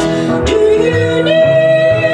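Two women singing a song together into microphones over piano accompaniment, with a long held note starting a little over a second in.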